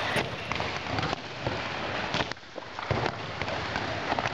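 Echoing sports-hall noise from a handball practice: a steady hiss of the hall with a few sharp thuds of the handball scattered through.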